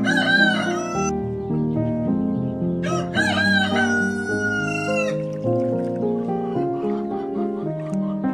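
A rooster crowing twice, a short crow at the start and a longer one about three seconds in that ends on a long held note, over background music with sustained notes.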